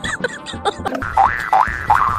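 Cartoon-style comedy sound effects over background music: a run of quick boing-like pitch slides, then three larger rising-and-falling sweeps in the second half, with a burst of laughter at the start.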